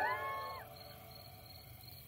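The last notes of the soundtrack music glide and stop in the first half second. They leave faint night-time ambience with insects chirping softly, a high short pulse about three or four times a second.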